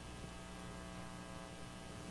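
Faint, steady electrical mains hum, a low buzz that holds at one pitch throughout.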